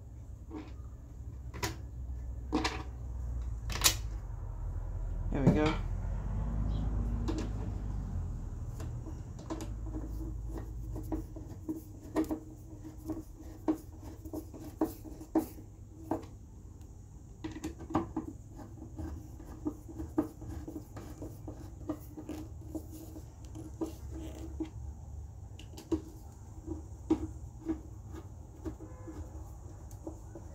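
Screws being turned into a subwoofer cabinet panel with a hand screwdriver: scattered clicks and taps from the screwdriver and screws, with handling knocks and a low rumble over the first ten seconds or so.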